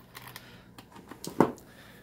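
Small plastic clicks and handling noise as the data cable's connector is pulled off a handheld OBD2 scan tool, with one louder knock about one and a half seconds in.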